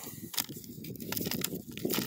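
Small rocks and dry dirt clods crunching and rattling on a quarter-inch wire mesh sifting screen as a hand sorts through them, with a few sharp clicks of stone on stone over a steady gritty rustle.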